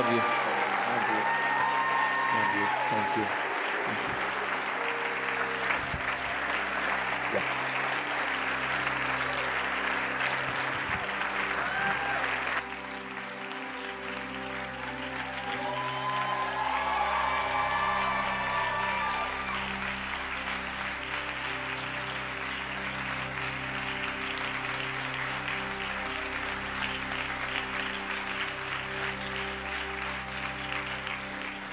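A congregation applauding and cheering over soft music of held chords. The applause drops sharply about halfway through, and lighter clapping carries on over the music.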